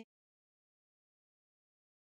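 Near silence: dead silence, with no sound at all.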